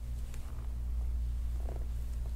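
A steady low hum with a faint, evenly pulsing rumble on top of it, and a few faint soft ticks.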